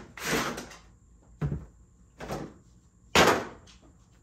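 Packaging being handled: a cardboard box is opened and a hard plastic carry case is pulled out and set down, giving four separate knocks and rustles about a second apart. The loudest, sharpest thud comes near the end.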